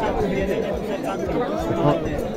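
Crowd chatter: several men talking at once, voices overlapping with no single one clear.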